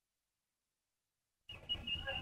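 Near silence in a pause of a recitation heard over a phone line: the line drops to dead silence, then faint line noise with a thin high tone comes back about one and a half seconds in.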